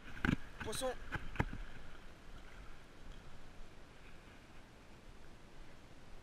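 Shallow seawater lapping around a wading angler. In the first second and a half there are a few sharp knocks from handling the rod and a short voice sound.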